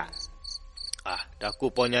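Crickets chirping in a steady run of short, high chirps, about four or five a second, as a background ambience under the narration.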